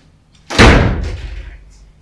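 A single loud slam-like impact about half a second in, dying away in a low rumble for over a second.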